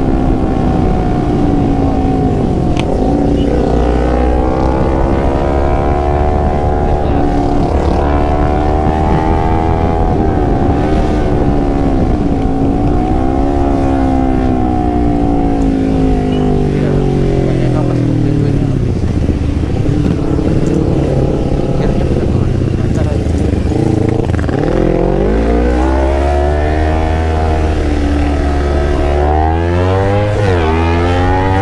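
A Kawasaki Z250's parallel-twin engine heard from the bike while riding, its revs rising and falling as the rider accelerates, eases off and shifts, with wind rushing over the action-cam microphone. The revs fall away around two-thirds of the way through, then climb again near the end.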